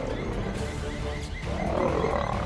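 Male lions growling as they fight, over background music.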